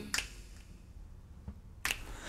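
Finger snaps keeping time in a rest of an a cappella vocal passage: a sharp snap just after the start, a faint one later, and a louder one near the end, with little else between.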